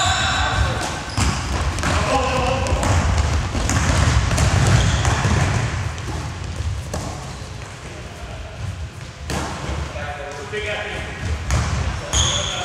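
Basketball game play in a sports hall: the ball bouncing on the court floor and players' running footsteps, with short shouts from players now and then.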